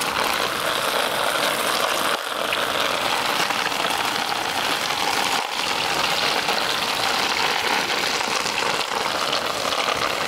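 Food frying in a pan of hot oil: a steady sizzle.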